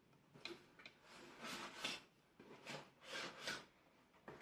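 Faint rustling and scraping of cardboard, a few short stretches, as a boxed model kit is slid out of a cardboard shipping carton among its packing.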